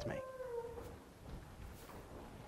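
A man's voice holding the last word of a spoken question, falling in pitch for under a second, followed by faint low rustling room noise as a congregation gets to its feet.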